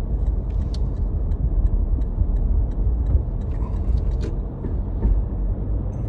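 Car driving slowly along a village road: a steady low rumble of engine and tyres, with a few faint clicks.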